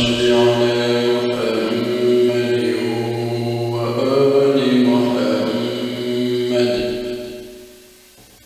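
A man reciting the Quran in long, drawn-out melodic phrases, with a steady low hum underneath. The voice fades away near the end.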